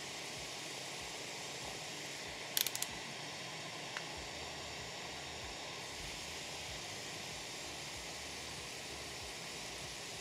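Steady hiss of steam driving a 3D-printed polycarbonate impulse steam turbine, with a short cluster of clicks about two and a half seconds in and one faint click at about four seconds.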